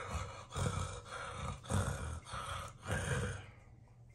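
A man imitating a monster's open-mouthed panting: a string of breathy in-and-out pants ("hih-huh, hih-huh"), fading out near the end.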